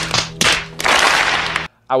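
Two sharp cracks about half a second apart, then about a second of rushing, hissing noise over a low steady hum, cutting off suddenly. It is an edited-in sound effect.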